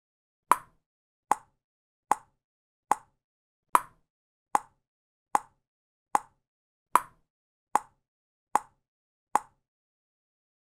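Metronome clicking steadily, about 0.8 s apart, twelve short dry clicks, every fourth one slightly louder as a bar's downbeat. It is a count-in beat for playing along.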